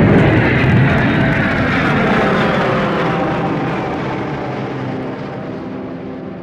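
Jet aircraft passing overhead: a loud engine roar that fades away over the seconds, with a whine sliding down in pitch as it recedes.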